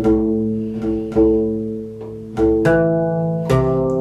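Guitarrón mexicano strings plucked one at a time while it is being tuned, about six plucks with each note ringing out. In the last second and a half the plucks move to lower strings.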